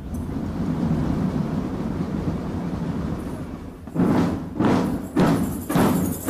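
Marching band drums: a low, continuous rumble for about four seconds, then heavy drum strokes played together, a little under two a second.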